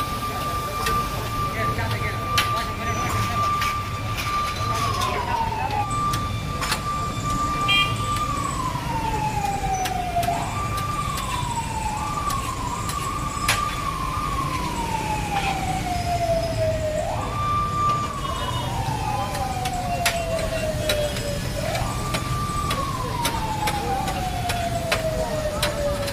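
A motor-driven siren wails. It winds up quickly to a steady high tone, holds it, then slowly winds down, about six times over, with a quick run of short wails in the middle. Metal spatula clicks and scrapes on a steel griddle are heard throughout, over a steady low noise.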